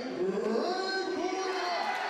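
Long, drawn-out calling voices, their pitch gliding up and down.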